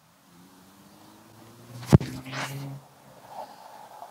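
A backhand disc golf throw of a lightweight Latitude 64 Saint driver: one sharp snap about two seconds in as the disc leaves the hand, followed by a brief rushing sound, over a faint low hum.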